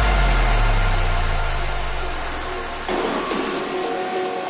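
Electronic title-card sound effect: a noisy whoosh with a deep bass rumble, slowly fading, following on from electronic dance music. About three seconds in, a fainter electronic tone layer joins.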